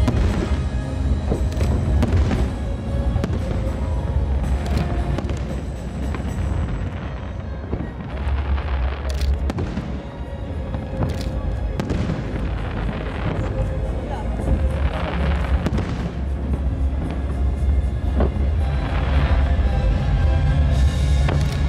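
Aerial firework shells bursting, with booms and a few sharp cracks, over music that plays throughout.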